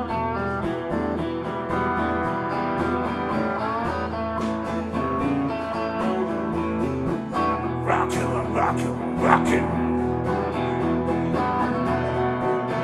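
Two electric guitars playing a live blues instrumental passage over a steady beat, with a few sharper, louder accents about eight to nine and a half seconds in.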